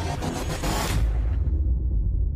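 Outro music sting: a rising whoosh that cuts off about a second in, followed by a low rumble.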